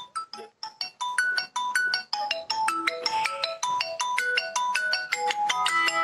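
A mobile phone ringing with a melodic ringtone: a quick tune of short pitched notes, several a second, repeating without a break.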